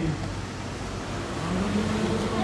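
An engine revving up about a second and a half in and holding its pitch, over a steady low hum and outdoor background noise.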